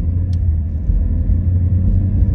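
Low, steady rumble of a car on the move, heard from inside the cabin, with one faint click about a third of a second in.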